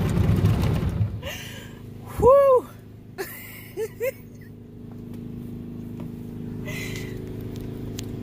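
Automatic car wash heard from inside the car: cloth brushes and water beating on the body and windows, loud for the first second, then easing to a steady machine hum. A voice gives one loud rising-and-falling "phew" about two seconds in, with two short yelps a little later.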